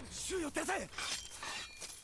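Anime soundtrack: a voice shouting an order in Japanese over a crackling, shattering sound effect that fades out.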